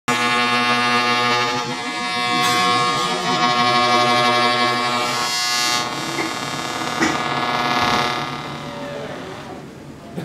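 Experimental live music: a dense drone of sustained, overlapping pitched tones with many overtones, with a few short noisy swells and a click, fading away over the last couple of seconds.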